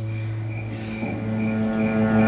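Live band music between verses: a held low bass note that moves up to a higher note about a second in, with short high notes repeating faintly above it.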